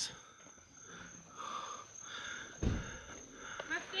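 Faint voices of people talking some way off, with one short low thump a little past halfway. A voice starts speaking up close near the end.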